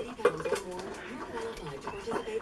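A dog eating fast from a plastic slow-feeder bowl: a few sharp clicks and clatter of food and teeth against the bowl.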